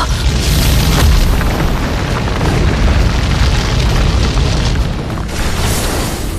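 Cinematic explosion sound effect: a deep boom that keeps rumbling, with a sharp crack about a second in and another near the end, over dramatic background music.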